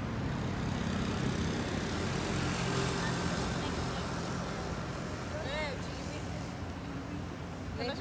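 Road traffic: a motor vehicle's engine running with a steady low hum over general street noise, strongest in the first few seconds and then fading.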